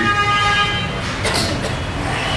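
A vehicle horn sounding one steady note for about a second, then stopping, over a constant background hiss.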